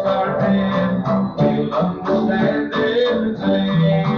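Instrumental break in a live country-gospel song: strummed guitar over held bass notes in a steady rhythm, with no voice. The sound is from an old cassette tape, with its highs cut off.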